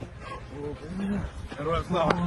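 A few short, unintelligible vocal calls from a man's voice, over low rumbling wind and handling noise.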